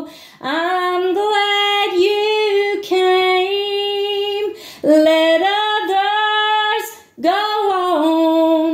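A woman singing a gospel song to Jesus solo, with no instruments: four phrases of long held notes with short breaths between them.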